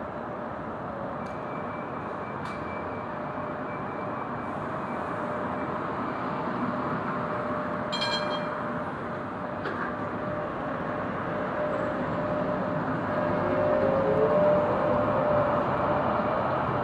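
A Sheffield Supertram tram running along the street tracks, its motor whine and wheel noise growing louder in the second half and sliding in pitch near the end. Steady street traffic runs underneath, with a brief ringing chime about halfway through.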